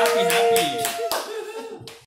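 A small group clapping and cheering, with held, drawn-out voices that break off about half a second in; the clapping thins out and fades toward the end.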